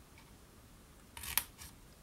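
Scissors cutting a slit into folded paper: one short snip a little past a second in, followed by two fainter ones.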